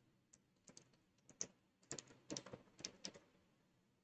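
Computer keyboard being typed on: faint, scattered key clicks that come in a few short runs, mostly in the second half.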